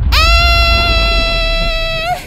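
A young woman's long, high, held cry of 'aaah', loud and steady in pitch, rising slightly as it starts and wavering as it ends, over a low rumble.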